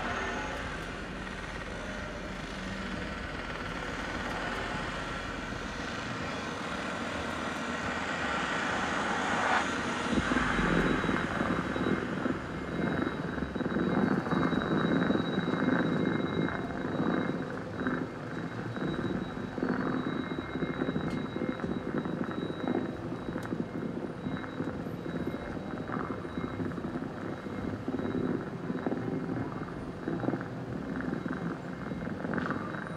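Sound effects from a building projection show's soundtrack played over outdoor loudspeakers: a dense rumbling noise that swells about eight seconds in and then carries on with a crackling texture.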